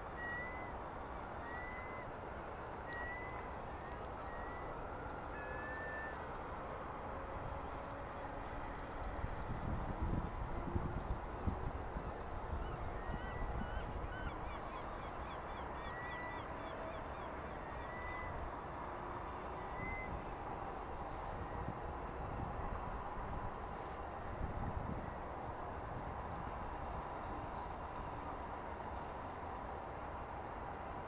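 Birds calling in the background: a short high call repeated about once a second, in one run at the start and another about midway, over a steady outdoor hiss. Low rumbles come in twice, the louder about a third of the way through.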